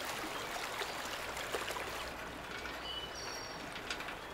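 Shallow stream running steadily over a stony bed, with a few brief high bird chirps near the end.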